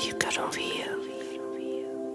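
Soft ambient background music with sustained held tones, and whispered, breathy vocal sounds in the first second or so.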